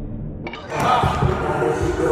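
Thuds on a wooden gym floor and wall padding as an exhausted sprinter drops to the floor, starting suddenly about half a second in, with her voice straining and gasping just after.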